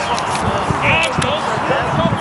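Distant overlapping voices of boys and adults calling out across an open sports field, with a few short sharp knocks.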